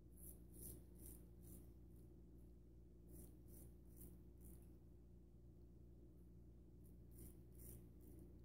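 Faint, short scraping strokes of a Parker SRB shavette straight razor with a half blade cutting lathered stubble on the neck against the grain. The strokes come in quick clusters: a few at the start, a run of about five midway, and two near the end.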